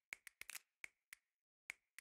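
Faint, sharp clicks, about eight in two seconds at an uneven pace, with dead silence between them.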